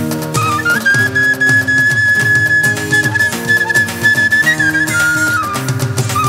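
Bamboo transverse flute (bansuri) playing a folk melody, holding one long high note for about four seconds before stepping back down, over instrumental accompaniment with a steady percussion beat.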